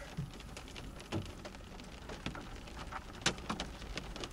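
Rain striking a car's windshield and roof, heard from inside the cabin: scattered, irregular drop ticks over a steady low patter.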